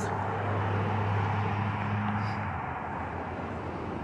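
Street traffic: a motor vehicle's low engine hum with tyre and road noise, the hum stopping about two and a half seconds in.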